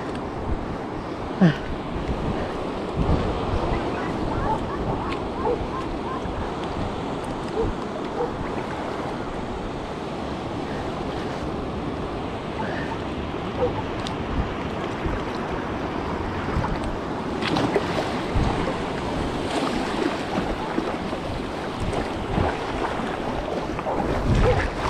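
Shallow seawater sloshing and splashing around a person's legs as they wade through the shallows, with small waves lapping and wind buffeting the microphone.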